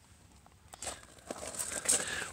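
Soft rustling and scuffing with a few small clicks, starting about two-thirds of a second in: handling noise as the phone camera is moved.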